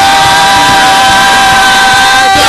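Church worship music: a long held chord sounding steadily over the loud noise of a congregation.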